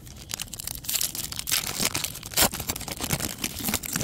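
A foil card pack being torn open by hand, the wrapper crinkling in a quick run of crackles, loudest about two and a half seconds in.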